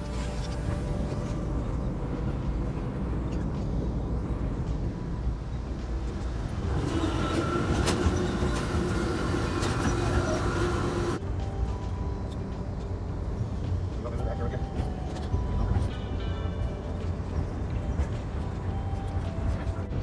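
Inside a moving Amtrak passenger train: a steady low rumble of the running train. Between about 7 and 11 s it grows louder and harsher, with a steady whine, while passing through the vestibule between two cars, then drops back suddenly as if a door has shut.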